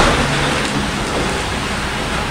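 A steady hiss of background noise with no distinct event, in a pause between spoken lines.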